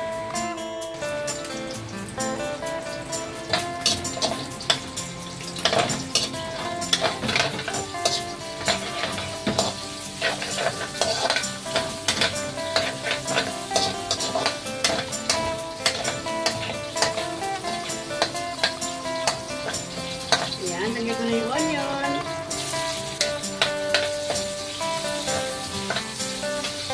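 Meat frying and sizzling in an aluminium wok, stirred with a metal ladle that clinks and scrapes against the pan many times, over steady background guitar music.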